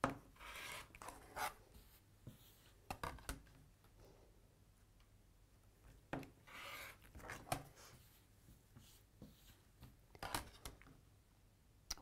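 Quiet, irregular cutting and rubbing sounds as pieced cotton fabric squares are cut along the diagonals with a rotary cutter against a quilting ruler on a cutting mat. The cut triangles are slid across the mat, with a few light clicks.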